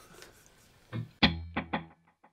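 Electric guitar struck once through a ping-pong delay in a stereo rig, followed by a quick run of echoes that die away.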